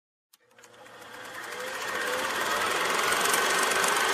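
A fast, rapidly repeating mechanical clatter that fades in from silence about half a second in and grows steadily louder.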